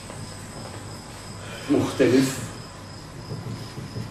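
A cricket chirping steadily in the background as a faint, regularly pulsed high tone. About halfway through come two short, louder sounds close together.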